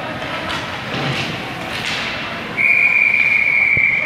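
A steady, high, single-pitched whistle blast begins about two and a half seconds in and holds to the end, over a background of ice-rink noise. The whistle is typical of a coach's whistle stopping or starting a drill.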